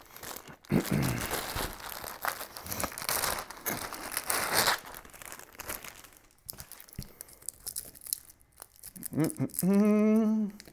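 Plastic packaging bag around a wiring harness crinkling as it is handled, densest over the first five seconds, then quieter rustling as the harness wires are moved about. A short hummed voice comes near the end.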